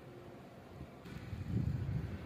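Wind buffeting the microphone, a low rumble that swells in the second half.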